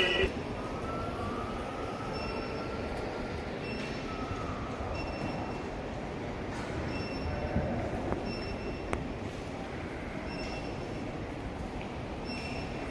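Steady hum and hiss of a large airport terminal hall, with short high beeps repeating roughly once a second.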